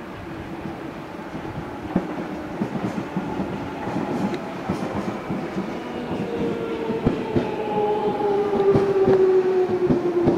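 Alstom 1996 stock Jubilee line train drawing in, growing louder as it nears, with its wheels clicking over rail joints. From about halfway, its GTO inverter propulsion whines in several tones that fall steadily in pitch as the train slows.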